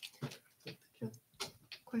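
A few short, quiet murmured voice sounds and breaths from people around a meeting table, scattered through the pause, with a clear spoken word starting at the very end.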